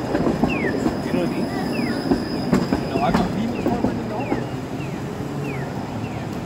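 Bombardier Flexity Outlook low-floor streetcar running under the overhead wire: a steady rumble of wheels on rail with a thin high whine, easing slightly as it draws away. A run of short falling chirps about every half second sounds over it.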